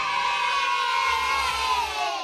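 A group of children cheering, one long 'yay' that slides down in pitch, over a music beat at the end of an intro jingle.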